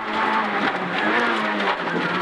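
Peugeot 106 N2 rally car's four-cylinder engine running hard, heard from inside the cabin under loud road and tyre noise, its note sagging slightly in the second half.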